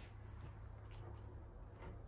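Quiet room tone with a steady low hum and a few faint, soft handling noises as a cheese stick is moved between the bag and the egg bowl.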